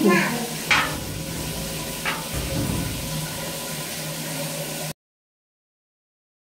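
A nylon nail brush scrubbing a wet, soapy glass shower screen: a soft, steady rubbing with two sharp knocks, about one and two seconds in. The sound cuts off abruptly to silence about five seconds in.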